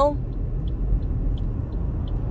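Steady road and engine rumble heard inside a moving car's cabin at highway speed, with a few faint ticks.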